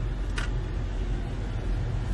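Steady low rumble of a car heard from inside its cabin while it drives slowly.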